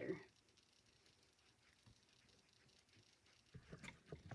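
Near silence: quiet room tone, with a few faint soft rustles and clicks near the end.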